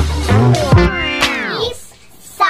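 Short electronic music sting for an animated logo, ending about a second in with a sound effect that falls steeply in pitch and fades away.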